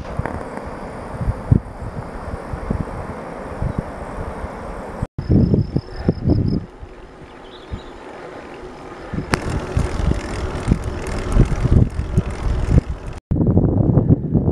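Wind buffeting the microphone of a camera riding on a bicycle, a steady rushing noise with low gusty blasts that come and go. The sound drops out abruptly twice, about five seconds in and near the end.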